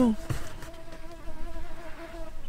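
A steady low buzz with a slightly wavering pitch: an insect flying close to the microphone.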